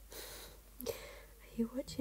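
Hushed, whispered speech beginning about halfway through, after a short breathy sound near the start.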